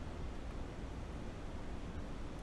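Steady background hiss with a low hum and no distinct sounds: room tone while a soldering iron is held on a wire joint, which makes no sound of its own here.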